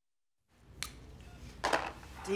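Dead silence for about half a second at a scene cut, then faint room tone with a single soft click and, near the end, a brief rustling noise.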